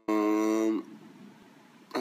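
A man's voice holding one steady, unchanging note for under a second, then cutting off.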